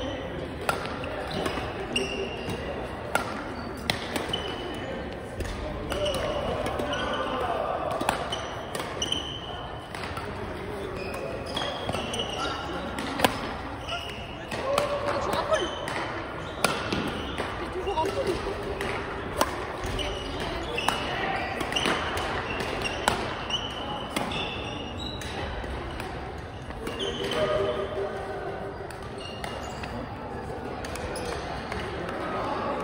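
Badminton rally in a gymnasium: sharp clicks of racket strings hitting the shuttlecock and short high squeaks of sneakers on the gym floor, over a background of people chatting in the hall.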